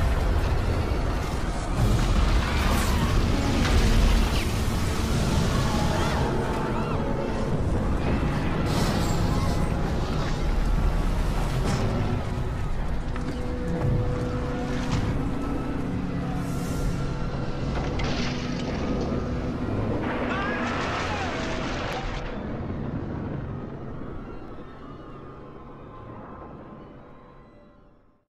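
Film soundtrack of a ship sinking: dramatic music over heavy low rumbling and booming effects as the broken liner goes down. It fades out over the last few seconds.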